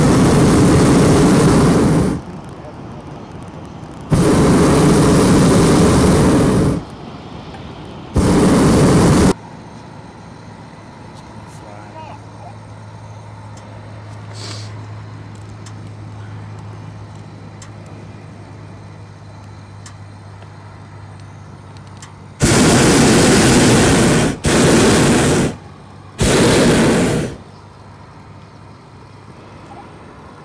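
Hot air balloon's propane burner firing in loud blasts of one to three seconds. There are three blasts in the first ten seconds, then after a long pause three more in quick succession near the end.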